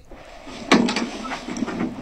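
Interior door being opened: a sharp click about two-thirds of a second in, then softer noise that fades away.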